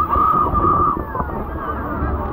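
Steady roar of Horseshoe Falls heard from the deck of a tour boat, mixed with passengers' chatter. A louder high-pitched sound stands out over it in the first second.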